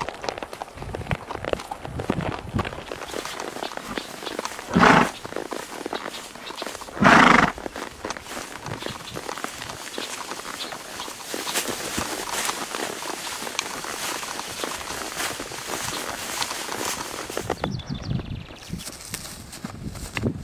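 Horses walking along a dirt trail and through tall grass: irregular hoofbeats and grass swishing against their legs. Two loud, short bursts of noise stand out, about two seconds apart, around five and seven seconds in.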